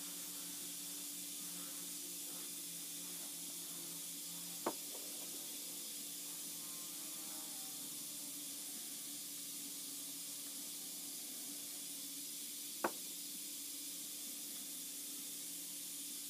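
Two short, light knocks about eight seconds apart as metal collet blanks are set down upright on a workbench, over a faint steady hum and hiss.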